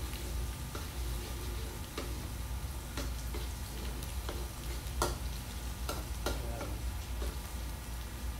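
Minced garlic sizzling in hot oil in a wok while a metal spatula stirs it, scraping and clicking against the pan about once a second.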